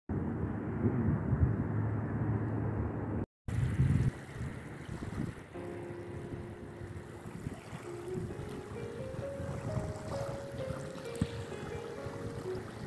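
Wind buffeting the microphone with a gusty low rumble, cut off for a moment about three seconds in. About halfway through, background music of slow, held notes that step in pitch comes in over fainter wind and water noise.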